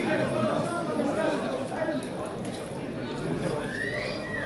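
Several people calling and talking across an open football pitch, voices overlapping, with a long drawn-out shout that rises and falls near the end.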